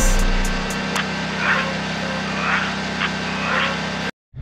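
Kawasaki engine of a Gravely Pro-Stance 52 stand-on mower running steadily, with a thump at the very start. Music plays faintly underneath.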